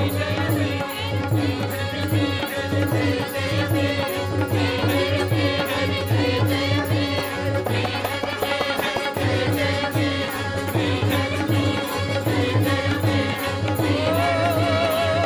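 A devotional mantra chanted to music, a sung melody over a steady low drone with a regular beat.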